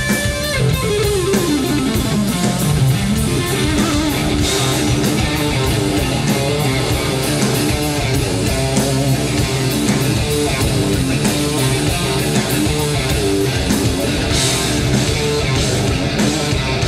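Live blues-rock power trio playing an instrumental passage: electric guitar lead over bass guitar and a drum kit keeping a steady beat. The guitar line slides down in pitch over the first couple of seconds.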